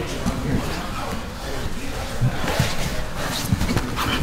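Indistinct voices over repeated dull thumps and shuffling of bodies on training mats during jiu-jitsu grappling.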